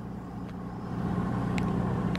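A truck's diesel engine idling: a steady low hum.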